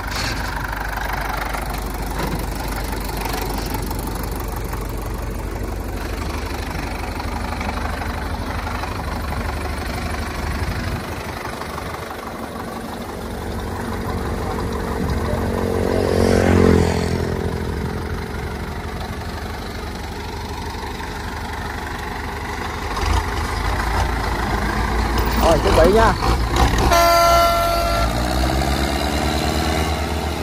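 Belarus tractor diesel engines running under load as one tractor, chained to another, tows a loaded cassava wagon up out of muddy ruts; the engine climbs in pitch and loudness about halfway through, then eases off. A short horn blast sounds near the end.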